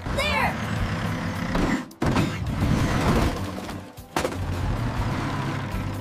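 Cartoon bulldozer sound effects: an engine-like rumble with clattering noise, broken by sudden cuts about two and four seconds in. There is a short vocal grunt near the start.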